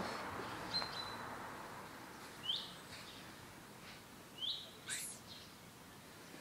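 A bird chirping faintly, one short rising chirp about every two seconds, three times. There is a light click near the end.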